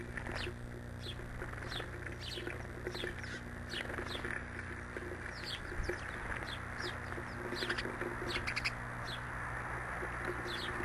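Small songbirds at a feeder chirping: short, high, downward-sweeping chirps repeated irregularly, about one or two a second, with a quick run of chirps near the end, over a steady low hum.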